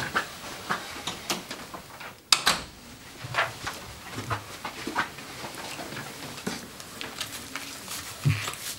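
A single sharp knock from a wooden office door about two seconds in, among soft scattered clicks and rustles of someone moving about.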